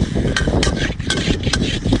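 Metal spatula scraping and clinking against a wok while seafood is stir-fried, a quick irregular series of sharp clicks and scrapes over a steady low rumble.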